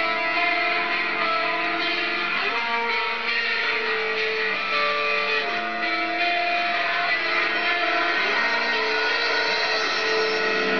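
Instrumental opening of a recorded metalcore song: electric guitars play sustained chords that change every couple of seconds, with no vocals yet.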